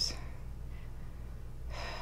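A pause in a woman's speech, with a steady low hum underneath and a breath drawn in near the end, just before she speaks again.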